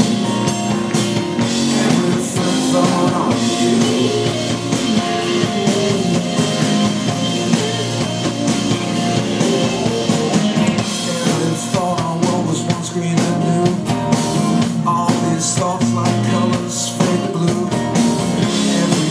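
Live rock band playing a song, with drum kit and guitar under a male lead voice singing.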